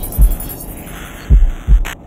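Deep heartbeat-like double thumps in the soundtrack, two pairs about a second and a half apart, over a low hum. A short burst of hiss comes just before the end as it fades away.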